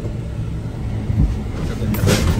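Jeep Wrangler driving, heard from inside the cabin: a steady engine and road hum, with a single low thump about a second in as it goes over a bump on a potholed road.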